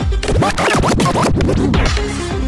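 Electronic dance music from a DJ mix, broken by a scratch: about half a second in, the steady kick drops out and quick back-and-forth pitch sweeps run for well over a second.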